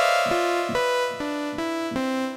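Synthesizer patch from Sonicsmiths' The Foundry Kontakt instrument, a buzzing saw-wave synth bed, played as a series of keyboard notes. The pitch steps to a new note about every half second over a pulsing rhythm.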